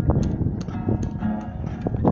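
Acoustic guitar strummed and picked, ringing notes with sharp percussive clicks among them.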